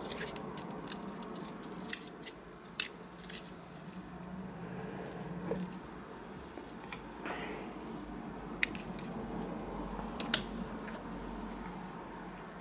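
Scattered small plastic clicks and taps as a SIM card is pushed into the holder of a TK102B GPS tracker and the opened plastic case is handled, over a faint steady hum.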